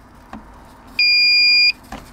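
Maxxair 5100K roof vent fan's control panel giving one steady, high-pitched beep, a little under a second long, about a second in. The auto button has been held long enough to set automatic temperature-controlled mode.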